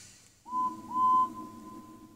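A two-toot whistle sound effect from a TV: a short toot about half a second in, then a longer one held for nearly a second, each sliding up into its note.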